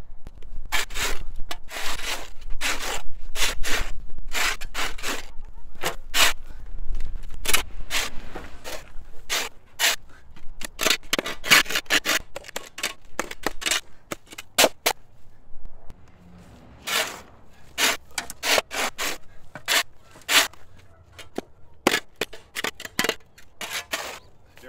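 Steel shovel scraping and chopping into dirt and matted sod in rapid repeated strokes, with a short pause about two-thirds through before the scraping resumes.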